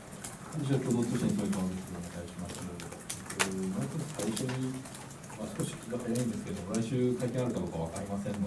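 A man's voice speaking off-microphone, muffled and distant, with a few sharp clicks among it.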